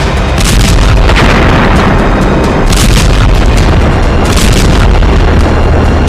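Loud dramatic music with several heavy booms like explosions, the deep low end running throughout.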